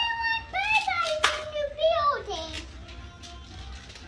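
A young boy's wordless sing-song vocalizing: one long held tone that rises, holds, wavers and then slides down, ending a little over halfway through, with a single sharp click about a second in.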